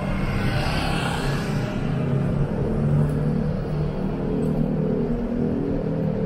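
Cars in street traffic running and passing close by: a steady low engine rumble, with a tyre hiss in the first second or so.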